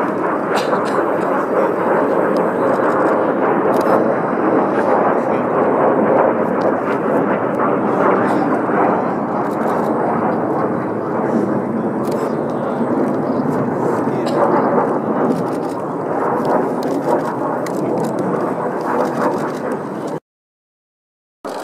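Jet noise from Blue Impulse Kawasaki T-4 jets flying aerobatics overhead: a loud, steady rush that holds without clear rises or falls.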